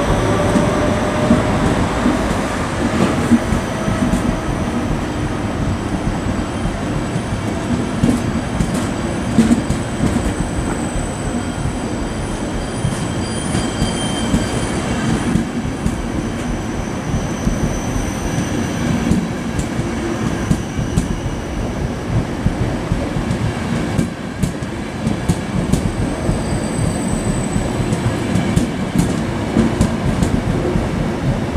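ÖBB Nightjet sleeping and couchette coaches rolling slowly past along a platform: steady wheel-on-rail rumble with clicks as the wheels cross rail joints and faint high wheel squeals now and then. A faint rising whine is heard in the first few seconds.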